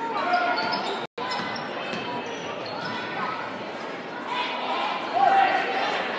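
Basketball game in a large gym: a ball bouncing on the hardwood court, short squeaks and crowd voices over a busy echoing din. The sound cuts out for an instant about a second in.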